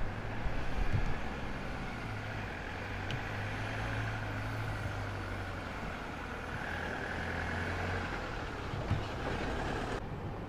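Minibus engines running at low speed, a steady low hum, with a short knock about 9 seconds in.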